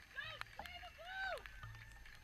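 Two high-pitched shouts from players on the pitch, a short one and then a longer rising-and-falling one about a second in. Low wind rumble runs on the microphone, with faint scattered clicks.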